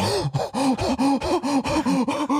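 A man's breathy, gasping laughter: a rapid run of short voiced huffs, about four a second.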